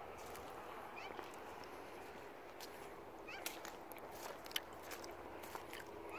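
Quiet outdoor ambience with a few short, high chirping calls and scattered sharp clicks of footsteps on slushy, icy snow, the loudest clicks about three and a half and four and a half seconds in.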